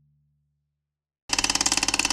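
A low note dies away into near silence. About a second and a quarter in, a loud, rapid mechanical clatter of fast ticks starts: a logo-sting sound effect.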